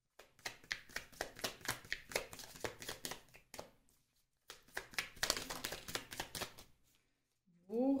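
A deck of oracle cards being shuffled by hand: rapid papery clicking in two runs of about three seconds each, with a short pause between them.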